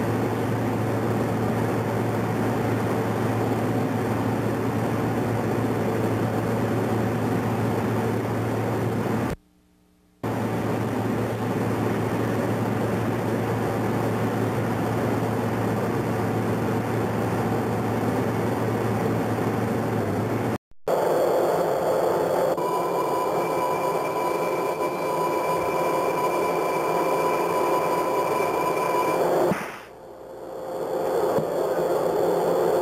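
Steady machinery noise with a low hum, cut by two brief dropouts. After the second dropout the noise changes and a steady high whine joins it until just before the end.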